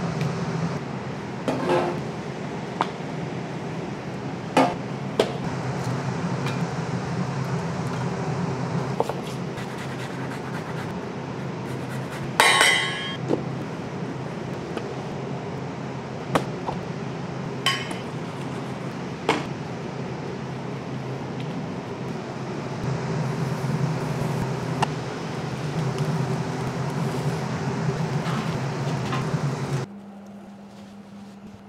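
Kitchen work sounds over a steady low rumble: scattered clinks and knocks of metal utensils, bowls and trays, with one louder clatter about twelve seconds in.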